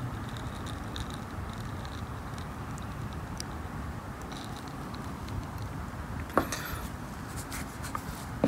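Acetone being poured into a plastic cup of Paraloid B72 pellets, a steady soft trickle, with a click and brief rustle near the end.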